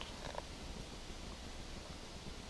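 Quiet outdoor ambience with a low, fluttering rumble of wind on the microphone.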